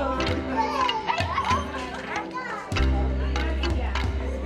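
Music with a steady bass line, mixed with young children's voices and chatter.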